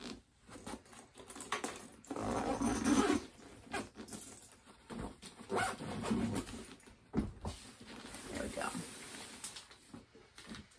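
A Maine Coon cat vocalizing several times, loudest about two seconds in, while it is handled into a soft fabric carrier, with rustling of the carrier's fabric and mesh.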